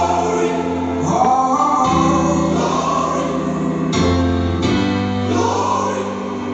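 Gospel choir singing long held notes over a steady bass and keyboard accompaniment.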